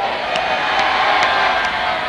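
Large congregation cheering and shouting together in many voices at once, at a steady level.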